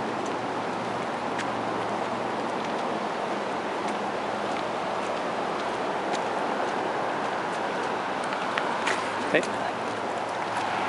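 Steady, even rush of flowing water, with a few sharp clicks near the end.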